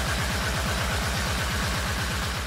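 Japanese hardcore (J-core) electronic music: a very fast roll of kick drums, about a dozen a second, each falling in pitch, under a steady wash of noise.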